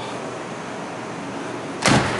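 The door of a 1953 Oldsmobile Holiday 88 being shut with a single loud thump near the end, over a steady hiss of room noise.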